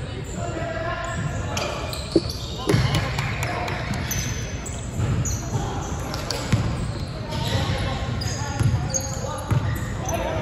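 Basketball game on a wooden hall court: the ball bouncing, sneakers squeaking on the floor and players calling out, all echoing in the large hall.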